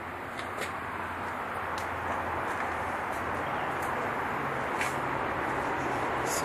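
Steady outdoor background noise with a faint low hum, and a few light clicks and taps scattered through it.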